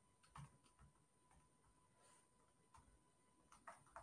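Faint computer keyboard keystrokes: a few irregular, soft taps over near silence.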